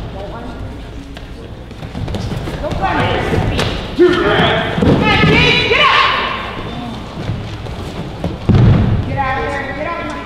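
Wrestlers' bodies thudding onto the mat as one takes the other down, with a hard hit about four seconds in and another about eight and a half seconds in. Shouting voices run over it.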